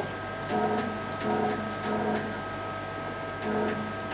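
CNC router stepper motors jogged in fine steps from a handwheel pendant. They give a string of about five short whining hums, each lasting about half a second, one for each turn of the wheel, with faint clicks between them.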